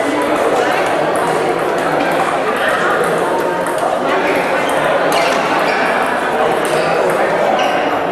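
Table tennis ball being struck by rackets and bouncing on the table during a doubles rally: a run of sharp, light clicks. Steady chatter from the hall's echoing background runs under it.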